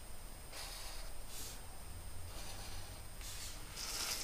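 Felt-tip permanent marker drawing short lines on paper: a few faint, soft scratchy strokes about a second apart.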